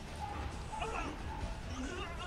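Anime episode soundtrack: short, wavering high-pitched vocal sounds over soft background music.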